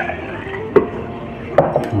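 An enamel mug knocking sharply against a plastic container about a third of the way in, then lighter clicks near the end, while rice wine is poured from the mug with a faint liquid sound.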